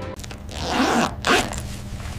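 Two short rasping swishes about a second in, the second one shorter and sharper, over a faint low hum.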